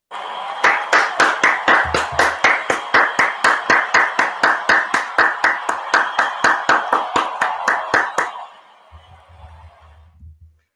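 Hand clapping in a steady, quick rhythm, about four or five claps a second, over a noisy wash. It stops about eight seconds in.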